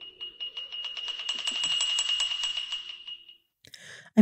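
Eerie horror film score: a sustained shrill high tone over a rapid, even pulse of about seven beats a second, swelling toward the middle and dying away shortly before the end.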